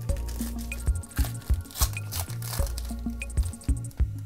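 Background music with a steady beat. Over it, a trading-card pack wrapper is torn open and crinkled for roughly the first three seconds.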